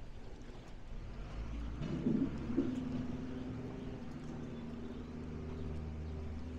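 A steady low mechanical hum with a constant pitch sets in about two and a half seconds in, over a low rumble that runs throughout.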